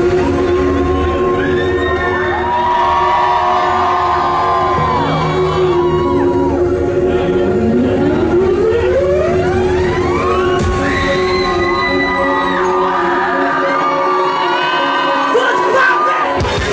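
Intro music over the club's PA system: a steady held drone over a pulsing bass, with a long rising sweep about halfway through. A crowd cheers and screams over it as the band comes on, and the bass drops out near the end.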